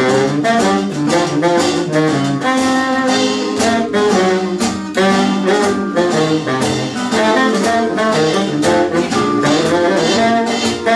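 A small classic jazz band playing an up-tempo tune live. A bass saxophone carries the stepping bass line under guitar, piano and drums.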